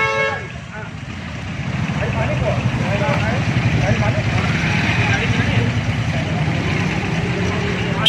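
Street traffic noise: a steady low engine rumble from vehicles close by, with faint voices in the background.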